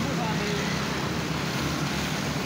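Steady outdoor background noise with a low hum underneath.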